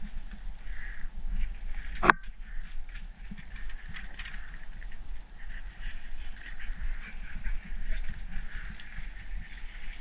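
Faint rustling and small taps of wet grass and muck being sorted by hand on an aluminum boat deck, over a steady low rumble, with one sharp knock about two seconds in.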